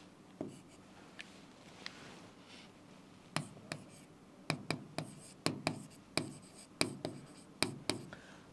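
Chalk writing on a blackboard: a few faint strokes, then from about halfway a quick run of sharp taps and short scrapes, two to three a second, as figures are written.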